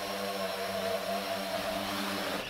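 Electric motors and propellers of a Foxtech Swan K1 H-wing VTOL flying as a quadcopter, with a steady, even hum as it descends slowly to land.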